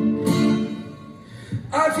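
Live band music between sung lines: held guitar and band chords ring and fade about a second in. The band comes back in just before the end.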